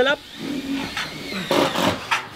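Steel roofing panel being shifted into place by hand, with a brief scraping rush of metal near the end.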